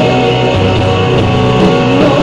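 Electric guitar, a 1960 Gibson Les Paul played through a Marshall amp's clean channel, in an instrumental passage of an 80s rock ballad, with other instruments behind it.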